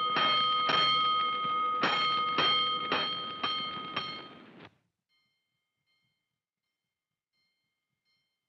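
A fire alarm bell struck in rounds of five, each stroke ringing on, about half a second apart: the last two strokes of one round, a short pause, then a full round of five. This is the show's five-bell signal for a five-alarm fire. It ends abruptly just under five seconds in, and near silence follows.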